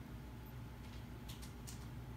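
Quiet room tone: a steady low hum, with a few faint light ticks in the second half.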